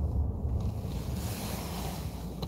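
Steady low rumble inside a car cabin, with a soft hiss swelling about a second in.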